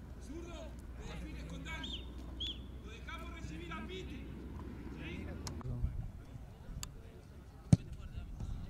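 Men's voices talking and calling indistinctly, then in the last few seconds two or three sharp knocks, the loudest just before the end.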